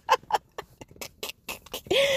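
A woman laughing in a quick run of short breathy bursts, a few voiced at first, then trailing off into sparse puffs of breath.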